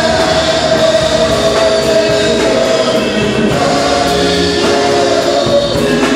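A church congregation and worship singers singing a gospel praise song together, holding long notes, with a band accompanying on a steady beat.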